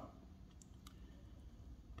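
Near silence: room tone with a few faint clicks around the middle.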